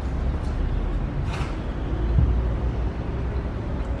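A steady low rumble of background noise, with a brief burst of higher-pitched noise about a second and a half in and a soft thump a little after two seconds.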